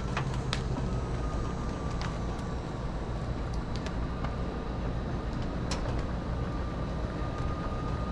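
Lippert through-frame RV slide-out motor running steadily with a faint whine as it draws the slide room in, with a few light clicks along the way.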